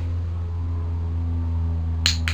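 A steady low hum with a few fainter steady tones above it, from something running continuously in the room.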